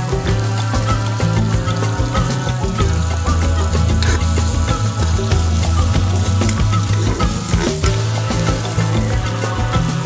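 Food sizzling in hot oil in a large aluminium pot, stirred with a spatula partway through, over background music with a steady bass line.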